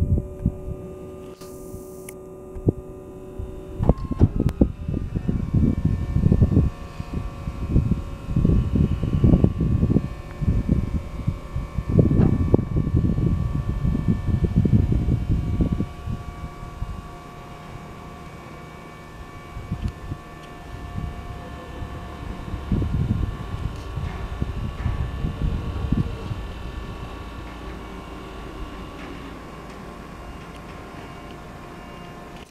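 Electric hydraulic pump motor of an ABM Orion 1000 electric personnel lift running with a steady whine as the mast and jib raise the basket; its tone shifts about four seconds in. Irregular low gusts of wind buffet the microphone over it.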